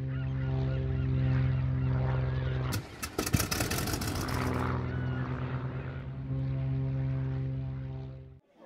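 Steady drone of a small propeller plane's engine, with high gull calls near the start. About three seconds in, a clattering, hissing noise breaks into the drone for about two seconds.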